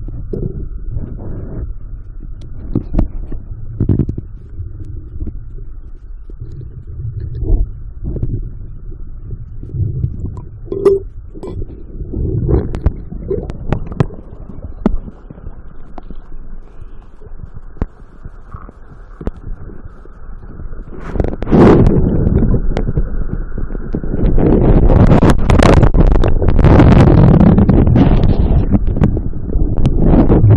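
Muffled underwater sound of river water heard through a camera held under the surface: a low rumble with scattered knocks and clicks. About two-thirds of the way in there is a sharp splash, and over the last few seconds loud water sloshing and churning takes over.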